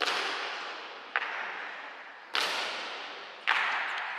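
Honor guards' boots stamping on a marble floor in a slow ceremonial march, four sharp strikes a little over a second apart, each ringing on in a long hall echo.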